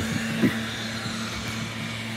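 An engine running steadily in the background, a low even hum.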